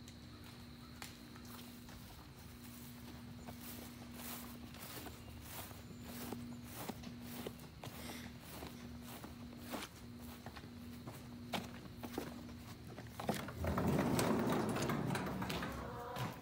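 Footsteps of someone walking across grass, a soft step roughly every half second to a second, over a faint steady hum. Near the end a louder rustling scrape takes over.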